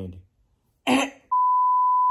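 A steady 1 kHz test-tone beep, the reference tone that goes with colour bars, coming in a little over a second in as one unbroken pitch.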